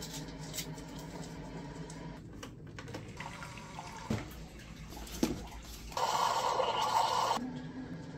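Single-serve pod coffee maker brewing into a ceramic mug: a low steady hum under the trickle of coffee, with a few small clicks. About six seconds in comes a louder rush of liquid lasting a second and a half.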